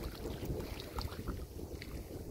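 Gusty wind buffeting the microphone as a low, uneven rumble, over choppy lake water lapping at the shore.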